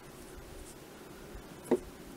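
A fingertip rubbing and pushing wet Apoxie Sculpt epoxy clay down a plastic model horse's neck: a soft, faint rubbing. Near the end there is one brief, sharp sound.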